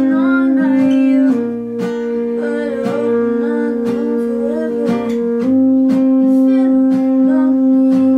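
An acoustic guitar is strummed while a saxophone holds long notes. The sax drops to a lower note about a second in and comes back up about five seconds in.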